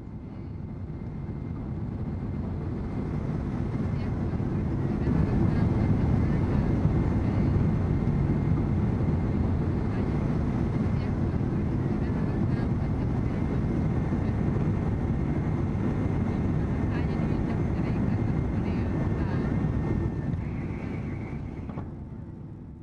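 Airliner in flight, a steady low rumble heard from inside the cabin, fading in over the first few seconds and fading out near the end.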